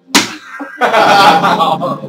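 A sharp hand slap a moment in, followed by about a second of loud, dense, noisy sound.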